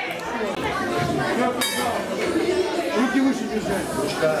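Overlapping voices of several people talking and calling out in a large hall, with no clear words. A brief high clink sounds about one and a half seconds in.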